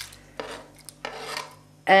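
Knife blade scraping across a plastic cutting board in a few short strokes, pushing chopped chili pepper off the board into a bowl of marinade.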